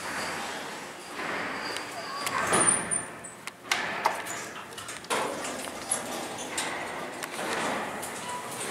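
Footsteps and the hall call button clicking, then the elevator's doors sliding open on a Dover traction elevator.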